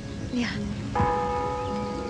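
A clock bell strikes once about a second in and rings on with a slowly fading tone, marking that time has not stood still.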